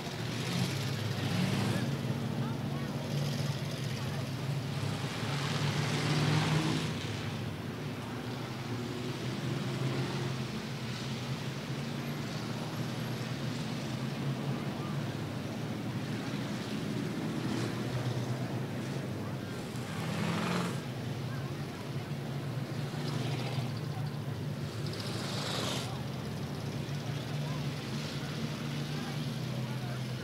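Race car engines running at low speed under a caution, a steady low drone that swells now and then as cars pass, with voices in the background.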